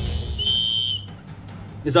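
A whistle blown once: a steady high note lasting about half a second, over a whooshing transition effect. It is the signal that starts the contestant's timed task.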